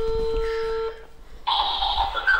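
Telephone ringback tone through a phone's loudspeaker: one steady ring about a second long, then a voice on the line answering the call about halfway through, thin and tinny through the small speaker.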